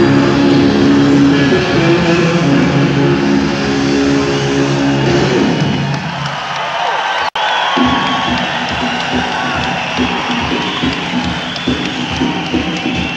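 A live rock band holds a final chord, with a sustained electric guitar on top; the notes slide downward about five seconds in as the song ends. After a brief dropout in the recording, the audience cheers and applauds.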